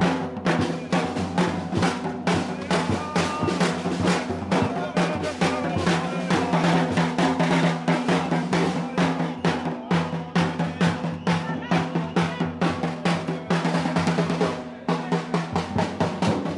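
Marching drum beaten with sticks in a fast, steady rhythm of rapid strikes, over a steady low drone; the beating breaks off briefly about a second before the end.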